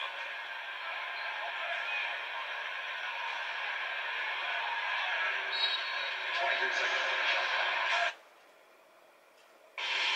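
Basketball broadcast playing through a television's speaker: arena noise and voices, with no clear words. About eight seconds in the sound cuts off to near silence for a second or two during a channel change, then comes back.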